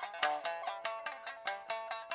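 Background music on a plucked string instrument, a quick run of sharply plucked notes, several a second.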